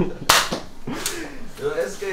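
X-Shot spring-powered toy dart blaster fired with a sharp snap, followed by a second, weaker snap less than a second later.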